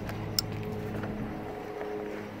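A single sharp plastic click about half a second in as the wiring connector is plugged onto the LED headlight bulb's lead, over a steady low hum.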